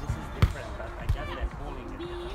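A volleyball being struck with the hands or forearms on a beach court, giving sharp slaps. The loudest is about half a second in, and another comes just after a second.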